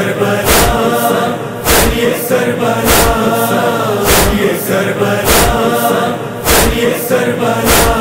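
Male voices chanting a noha lament as a held choral line between the lead's verses, over a steady deep thump about once every 1.2 seconds that keeps time.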